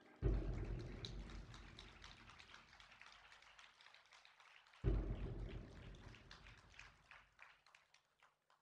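Two claps of theatrical thunder from the show's sound system, one at the start and one about halfway through. Each hits suddenly with a deep boom and fades away over about four seconds, with a crackling patter like rain over the rumble.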